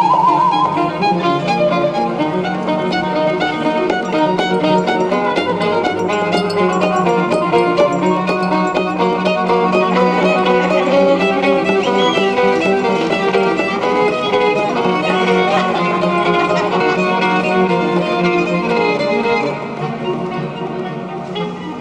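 Violin playing a busy, many-noted melody over a steady held low note.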